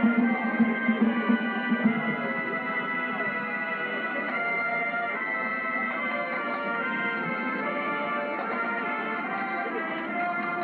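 A high school marching band's brass section playing sustained chords, with strong pulses in the first two seconds before the music settles into steadier held chords. It sounds dull and band-limited, like an old videotape recording played back from a screen.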